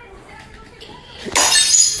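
A glass shattering suddenly about a second and a half in, a short loud crash with brief high ringing.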